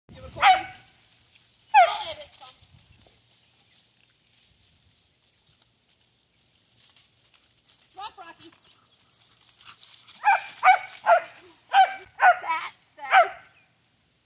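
A dog barking: two loud barks at the start, then, after a lull, a quick run of about seven barks near the end.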